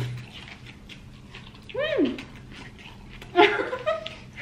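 A woman's high-pitched "mmm" of enjoyment with her mouth full, rising then falling, about two seconds in, followed by a second short voiced sound near the end. Faint clicks of eating lie between them.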